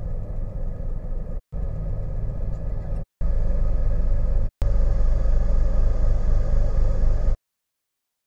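Low, steady engine rumble from a thousand-foot lake freighter's diesels as the ship passes. It comes in several pieces cut apart by sudden gaps and gets louder after about three seconds.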